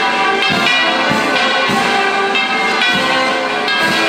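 Church bells pealing in a rapid, continuous peal, many overlapping ringing tones struck again and again.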